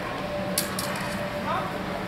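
Steel training longswords clashing in a sparring exchange: two sharp metallic clacks a little over half a second in, about a fifth of a second apart.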